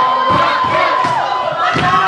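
A crowd of children and young leaders shouting a group cheer, one long high shout held through about the first second, then breaking into mixed yelling with claps.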